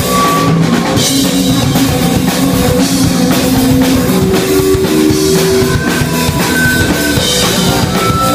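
Live punk rock band playing loud and steady: electric guitars over a driving drum kit.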